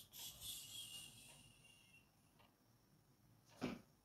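Mostly near silence: faint rustling of someone moving about and handling things for the first two seconds, then one short thump near the end.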